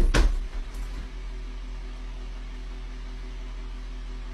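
Two sharp knocks about a fifth of a second apart at the very start, then a steady low hum.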